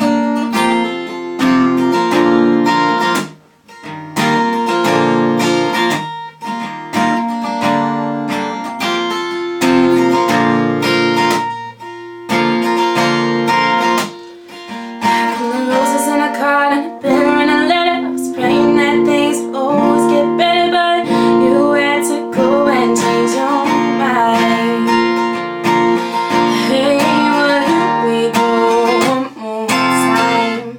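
Acoustic guitar strummed through a song's opening chords, with short breaks about 3 and 12 seconds in. About halfway through, a woman's singing voice joins the guitar.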